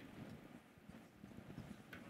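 Near silence: faint room tone with a few soft knocks of footsteps on the stage floor, a little louder near the end.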